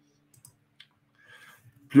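A few faint, sparse clicks in an otherwise quiet room, then a man's voice starts speaking at the very end.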